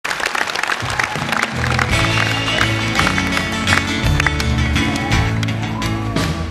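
A live band in an arena begins a song: bass and acoustic guitar come in about a second in over audience applause and crowd noise.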